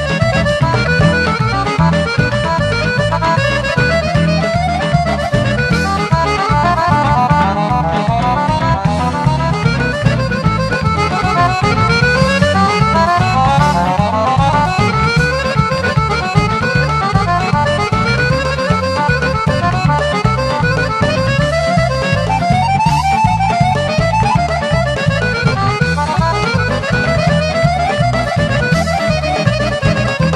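Folk band playing fast instrumental Bulgarian folk music: a lead melody in quick rising and falling runs of notes over a steady pulsing bass beat.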